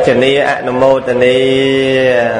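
A Buddhist monk's voice chanting, settling about halfway through into one long held note.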